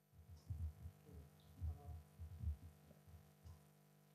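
A run of irregular low thuds and knocks, several in quick succession, over a steady electrical hum.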